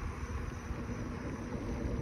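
Steady rumble and hiss of wind and movement on a phone microphone, with no distinct events.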